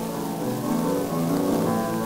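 Grand piano playing alone, a run of separate notes, on a c. 1928 electrical disc recording with steady surface hiss and crackle.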